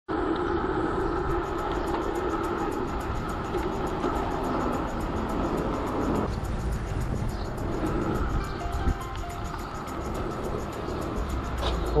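Street traffic heard from a bicycle riding a city bike lane, with music playing. The sound changes abruptly about six seconds in.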